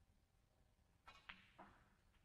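Snooker balls clicking: a quick run of three faint, sharp knocks about a second in, from the cue striking the cue ball and the balls hitting each other.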